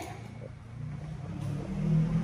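A motor vehicle's engine running, with a low hum that grows steadily louder.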